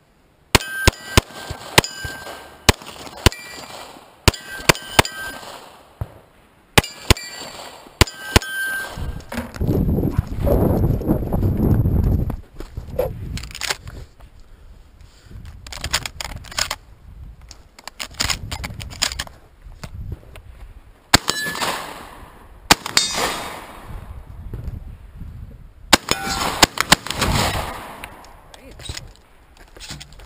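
A rapid string of pistol shots at steel targets, each hit answered by a ringing clang of steel. After a few seconds of rumbling movement noise, more gunshots follow from a long gun in several quick bunches.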